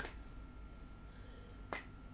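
A single sharp click about three-quarters of the way through, from tarot cards being handled, a card snapping or tapping against the deck, in an otherwise quiet room.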